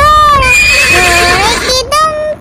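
Horse whinny sound effect: a long, wavering, high-pitched neigh starting about half a second in and lasting about a second.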